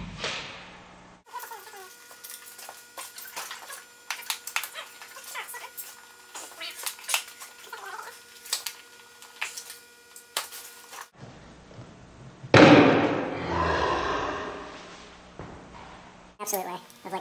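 Scattered light clicks and knocks of hands and tools working on the plastic air cleaner housing of a small single-cylinder OHV engine. About twelve seconds in, a loud, noisy burst lasts a couple of seconds.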